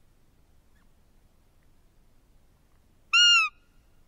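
A single short, loud, high piping note from a roe deer call (lure) about three seconds in, arching slightly and dropping at its end. It imitates a roe doe's piping call, the way a roe buck is drawn in during a calling hunt.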